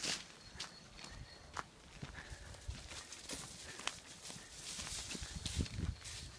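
Footsteps on a dirt path strewn with dry leaves, with scattered light crackles and some heavier, soft thumps near the end.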